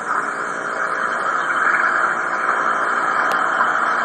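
Steady midrange hiss-like noise from TV audio recorded onto a cassette through the air, with no voices, and a faint click about three seconds in.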